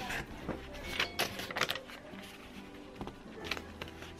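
Glue stick rubbed onto a strip of pattern paper and the paper handled on a table: a few soft rustles and taps over a steady low hum.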